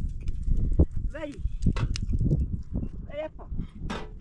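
Goats or sheep bleating a few times, each call wavering up and down, over a steady low rumble of wind on the microphone. A few sharp clicks are heard among the bleats.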